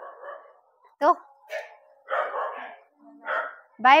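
A dog barking a few times, in short separate barks.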